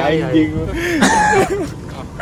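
Young men laughing, with one of them hiccuping among the laughter.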